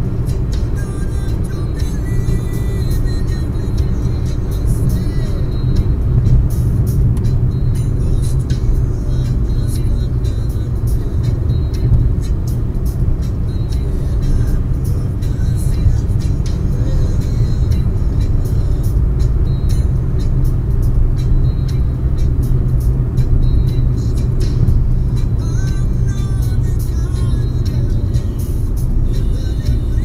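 Steady low rumble of a car's engine and tyres at highway speed, heard inside the cabin, with music playing faintly in the background.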